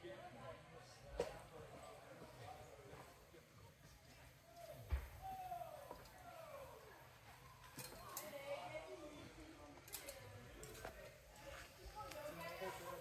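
Faint, indistinct voices of people talking at a distance, with a couple of short sharp knocks, the loudest about five seconds in.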